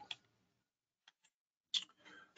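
Near silence, broken by a few faint ticks and one short click near the end: a computer mouse click advancing the presentation slide.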